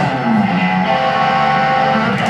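Live blues band music: electric guitar playing held notes over drums, with keyboard bass underneath.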